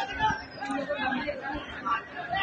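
People chattering close by, several voices overlapping, too indistinct to make out words.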